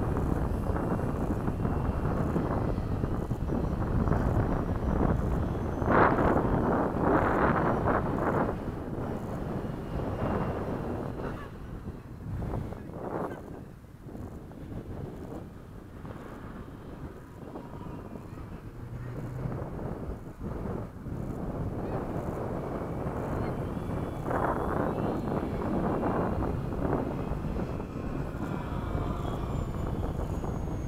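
Wind buffeting the microphone in gusts, with the faint whine of a Dynam Gee Bee RC airplane's electric motor and propeller as it flies around the field, dropping away in the middle and returning near the end.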